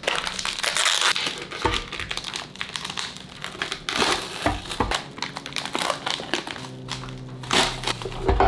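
Plastic food packaging crinkling and crackling as it is cut open and squeezed, with frozen ground turkey being worked out of a rigid plastic tray. A few dull knocks come in among the crackling.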